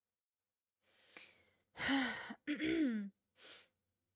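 A woman sighing in exasperation: a breath in about a second in, then two voiced sighs that fall in pitch, and a short breath out near the end.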